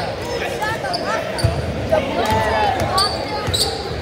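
Basketball game on a gym's hardwood court: a ball bouncing, with a dull thump about one and a half seconds in, short high sneaker squeaks, and voices of people courtside.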